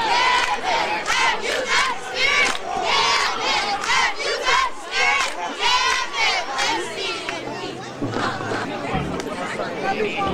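Football crowd shouting and cheering, many voices at once in repeated shouts about twice a second, easing off into chatter for the last few seconds.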